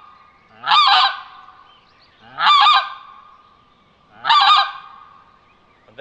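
Pinkfoot Hammer plastic goose call sounding three short, high honks imitating pink-footed geese, each about half a second long and roughly a second and a half apart. This is the high attention-getting call, used for geese passing far out.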